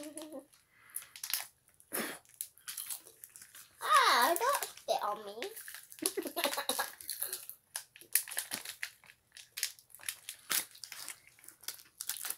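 A young girl's wordless voice, loudest about four seconds in, with wavering pitch. Around it are short crackles and clicks of a paper sweet packet being handled and a sweet being eaten.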